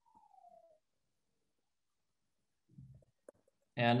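Near silence, with a faint falling tone at the very start and a single small click about three seconds in. A man's voice starts just before the end.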